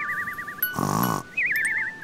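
A phone alarm sounding in two bursts of a warbling electronic tone, with a short sleepy groan between them.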